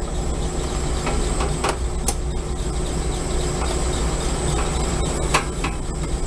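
Steady low machinery hum with a thin high whine running through it, and a few sharp clicks about two seconds in and again near the end, while liquid refrigerant is being let into the system through the manifold gauge set.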